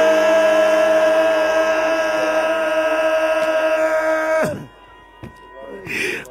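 A long, steady held vocal note over a sustained keyboard chord, cutting off about four and a half seconds in.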